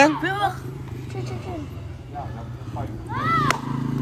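Brief snatches of boys' voices, about half a second in and again around three seconds in, over a steady low hum.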